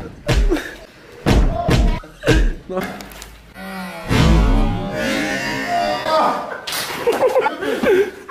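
Heavy blows of a sofa cushion striking a person, four dull thuds in the first two and a half seconds, with more hits later amid shouting.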